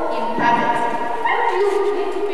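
A woman's voice speaking through a microphone, garbled by a recording fault so that the words cannot be made out. The pitch holds flat and jumps in steps instead of gliding like normal speech.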